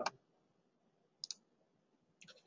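A computer mouse button clicked twice in quick succession about a second in, faint against a near-silent room.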